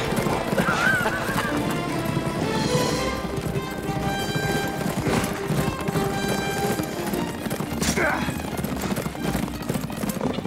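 Horses galloping with continuous hoofbeats, and a horse neighing about a second in and again near the end, over an orchestral film score.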